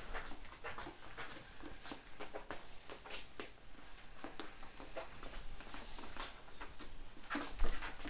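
Faint, irregular taps and scuffs of a plastic broom head nudging a tennis ball across a rubber floor mat, mixed with shuffling footsteps, and one louder short sound near the end.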